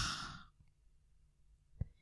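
A woman's breath out close to a handheld microphone, trailing off in under half a second as her phrase ends, then near silence broken by one short click near the end.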